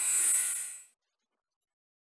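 A short whoosh sound effect for an animated logo reveal: a hissy swell that rises and fades away within about a second.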